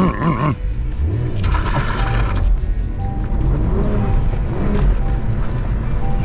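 Engine of a manual Cadillac V-Series Blackwing sedan, heard from inside the cabin as the car pulls away, revving up about a second in. Background music plays over it.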